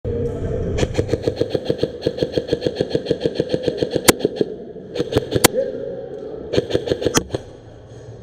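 Airsoft electric guns firing: a long full-auto burst of about seven shots a second, then a few single shots and short bursts, over a steady hum.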